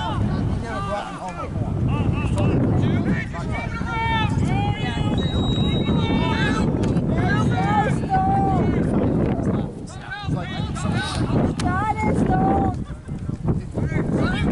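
Players and spectators shouting short calls across a lacrosse field, with wind rumbling on the microphone.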